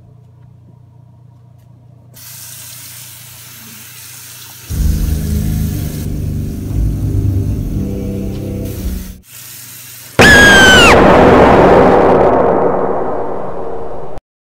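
A loud, sudden jump-scare sound effect about ten seconds in: a shrill tone that drops in pitch after about a second, over a noisy blast that slowly fades. Before it come a faucet's steady hiss and then a loud low rumble.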